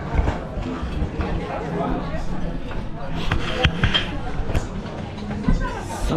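Several people talking at once, a babble of voices, with wind buffeting the microphone and a couple of sharp clicks a little past halfway.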